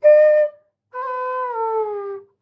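Bamboo bansuri flute played solo: a short, loud note, then after a brief pause a longer note that slides down in pitch.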